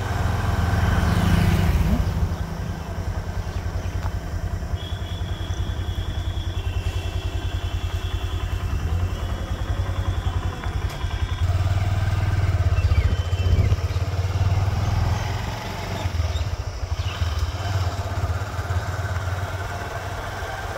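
Motorcycle engine running while riding, a steady low engine beat mixed with road noise. A faint high tone comes and goes in the middle.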